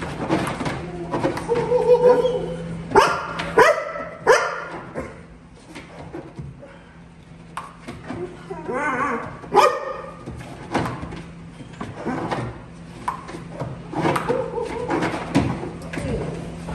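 Young Belgian Malinois barking and whining in excitement while being worked up by a decoy in a bite suit. A cluster of sharp barks comes about three to four seconds in and another near ten seconds, with whining in between.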